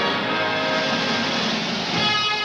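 Noise from a B-52 bomber's jet engines at takeoff, mixed with a film score.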